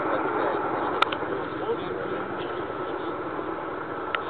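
Faint voices of people talking, over a steady outdoor noise, with one sharp click about a second in.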